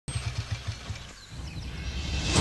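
Engine running with a low, rhythmic thump, about six beats a second, fading away about a second in.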